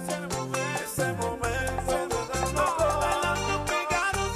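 Cuban timba (salsa-style) dance song playing, with a repeating bass line under piano, percussion and other pitched instrument parts.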